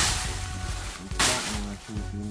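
Dry plantain leaves and trash rustling as they are handled, fading in the first half second, with another brief rustle about a second in.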